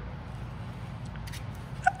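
Low, steady room noise with a few faint, short clicks a little over a second in.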